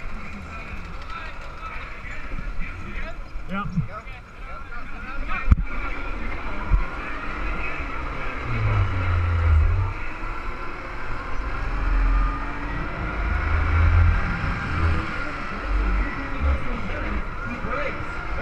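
Onboard running noise of an electric Power Wheels-based racing kart lapping the track, with its motor and wheels running steadily. Deep rumbles come in about halfway through and again later.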